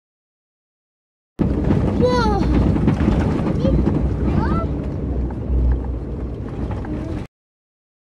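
Engine and road rumble inside a 4x4's cabin while driving, cutting in suddenly about a second and a half in and cutting off near the end. A child's high voice calls out, rising and falling, about two seconds in, and voices come up again around the middle.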